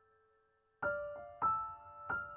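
Soft background piano music: a held note fades away, then three notes are struck in quick succession about a second in and ring on.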